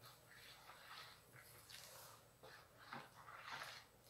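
Faint wet swishing of a slotted plastic spoon stirring an oily soap mixture with blended aloe in a plastic bowl, several soft strokes.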